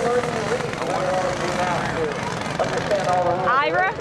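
A person yelling long, drawn-out cries that climb into a high shout near the end, over the steady running of go-kart engines on the dirt track.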